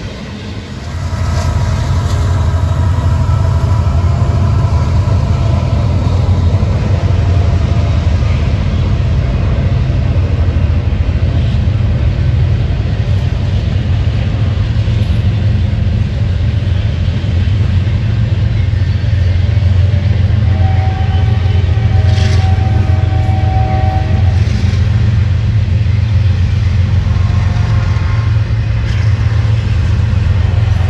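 Double-stack intermodal freight train passing, a steady low rumble of wheels on rail that swells about a second in. Thin high-pitched tones sound over it early on and again a little past the middle.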